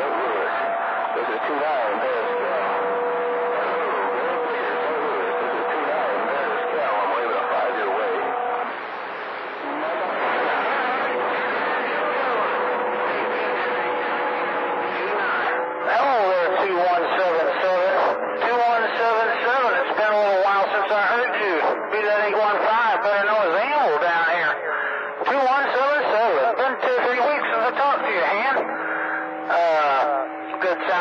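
CB radio receiving skip on channel 28: several distant stations talking over one another through the receiver's speaker, hard to make out. Steady whistling tones sit under the voices for the first several seconds. About halfway through, a stronger, clearer voice comes in.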